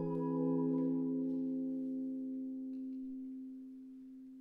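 A chord on a hollow-body electric guitar, held and ringing, slowly fading away over a few seconds.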